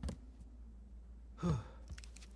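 A man out of breath, letting out one voiced, sighing exhale that falls in pitch about one and a half seconds in. A short click comes right at the start.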